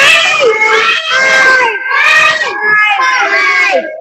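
Several children's voices calling out over one another, loud and high-pitched, answering a counting question. The voices run on almost without a break and stop just before the end.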